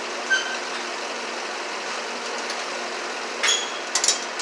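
A steady machine hum, with a brief high beep about a third of a second in and a short clatter near the end.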